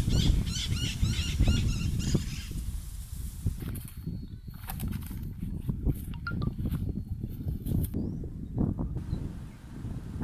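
Birds calling in a quick run of repeated high chirps for the first two seconds or so, over a low rumble of wind on the microphone. Scattered short crackles follow.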